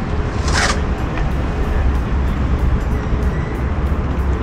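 Outdoor riverside ambience dominated by a steady, low rumble of wind on the camera's microphone, with a brief hiss about half a second in.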